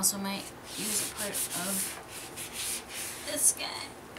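Sheets of paper sliding and rustling against each other and the paper trimmer's bed as they are shifted into place, in a series of short scrapes with the loudest near the end. A few brief wordless vocal murmurs come in the first half.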